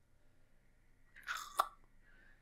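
Near silence, broken about a second and a half in by a brief soft crackle that ends in one sharp click.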